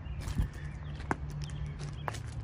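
Footsteps crunching on gravel, irregular short crunches, over a steady low hum.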